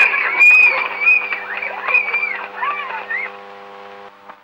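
A group of children shouting and calling out in high voices as they run, in many short rising-and-falling cries that die away shortly before the end. A steady low hum from the old film soundtrack runs underneath.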